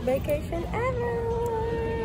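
A woman's drawn-out vocal exclamation that slides up in pitch and then holds one long, steady, fairly high note for about a second and a half.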